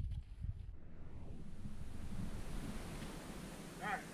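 Wind rumbling on the microphone, a steady low noise.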